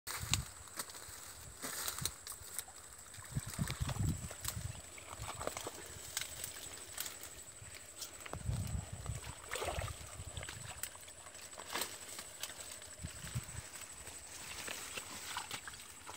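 Short-handled hoe chopping into the wet earth of a water channel's bank: irregular dull thuds and knocks of the blade in mud, a few strokes at a time with pauses between.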